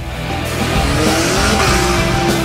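Rally car engine revving, its note rising and then holding, with tyre noise on a loose surface, mixed over rock music.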